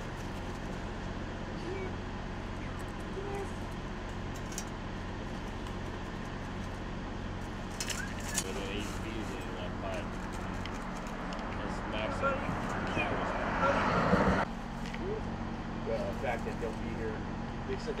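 Steady low hum of an idling engine, with faint distant voices and a few clicks. About twelve seconds in, a rushing noise builds, then cuts off suddenly about two seconds later.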